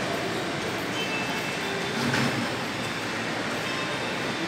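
Steady ambient noise of a large airport terminal hall: a continuous rumble and hiss with faint distant voices, and a brief low thump about two seconds in.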